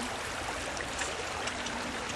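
Steady rush of a shallow creek flowing.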